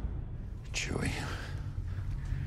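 A low, steady rumble with a brief whispered voice about a second in.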